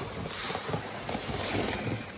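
A 00 gauge Class 73 model locomotive running on the layout track: a steady rushing rumble with faint irregular clicks.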